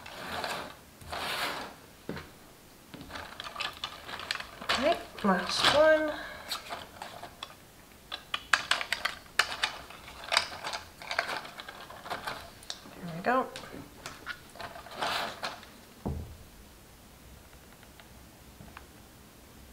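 Cardstock papercraft pieces being handled and adjusted by hand: rustling with many light clicks and taps, and a few short rising squeaks as paper surfaces rub. A dull knock near the end.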